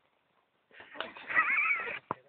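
A ram bleating: one loud, wavering bleat in the second half.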